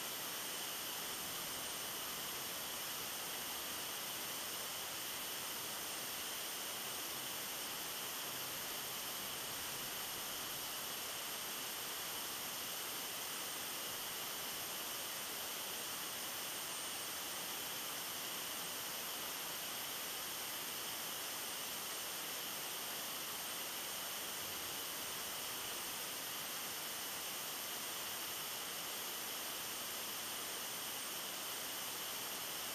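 Steady, unchanging high hiss with no separate sounds in it.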